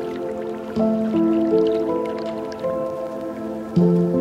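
Chill lofi hip-hop instrumental: soft held chords that shift to new notes every second or so.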